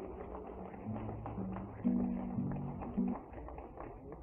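Music: acoustic guitar playing short held notes, with light taps between them.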